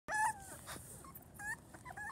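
Puppies whimpering inside a pet carrier. There are high-pitched whimpers: a longer one right at the start that falls slightly in pitch, and a short one about a second and a half in.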